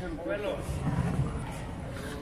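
Men's voices talking in the background, with no clear non-speech sound standing out.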